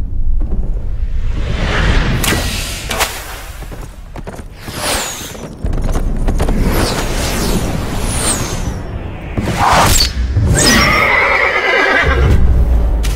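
Film battle sound: a few high falling whistles of arrows in flight and sharp strikes over a low rumble, then about ten seconds in a horse whinnies loudly as it goes down in a fall.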